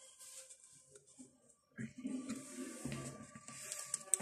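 Faint rustling and tapping of a stack of Pokémon trading cards being shuffled and handled over a wooden table, with a faint low murmur joining about halfway through.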